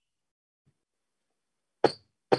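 Dead silence on a video-call audio line, broken near the end by one short, sudden burst of sound.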